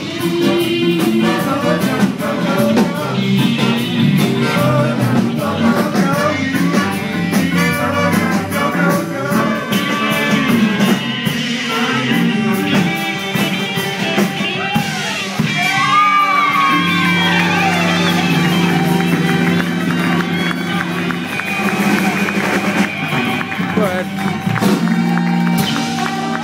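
Live band playing upbeat dance music with electric guitar and drum kit, steady and loud.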